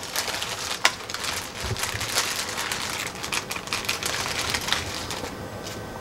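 Clear plastic zip-lock bag crinkling and rustling as it is handled and a small plastic toy bow is taken out, with a stream of small clicks and a sharp click about a second in.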